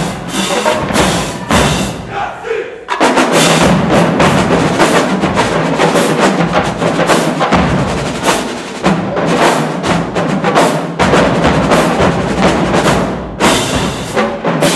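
Marching drumline of snare drums, tenor drums, bass drums and crash cymbals playing a loud, dense cadence. The playing drops back briefly about two seconds in, then comes back in full and suddenly at about three seconds.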